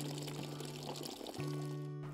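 Hot water pouring out of a tilted cooking pot into a bucket, a steady splashing hiss, under background music of held low notes that pause briefly just after a second in.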